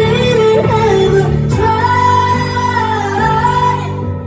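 Live pop song: a woman sings into a microphone over a full band, holding one long, slightly wavering note from about one and a half seconds in.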